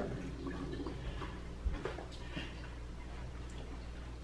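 Quiet room tone with a steady low hum and a few faint, scattered knocks and clicks, one a low thump a little under two seconds in.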